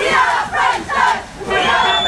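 A cheerleading squad shouting a chant together in short, repeated calls. About a second and a half in, a steady high held tone comes in over the voices.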